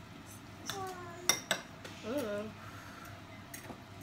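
Metal forks clinking and scraping in ceramic bowls as instant noodles are stirred to mix in the chili seasoning, with a few sharp clinks.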